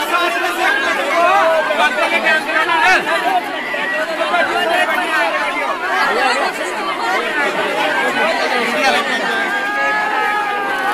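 A crowd of grieving women's voices crying and wailing over one another, many overlapping voices at once.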